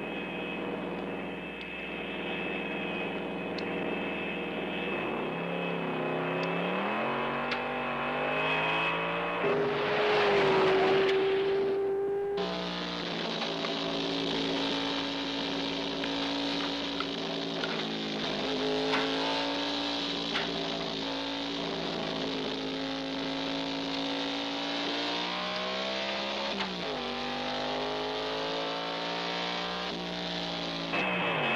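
Race car engines running and revving, their pitch rising and falling several times. A louder, noisier surge comes between about ten and twelve seconds in.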